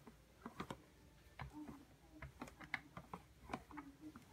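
A rolling pin working soft dough on a floured table, making faint, irregular light clicks and taps.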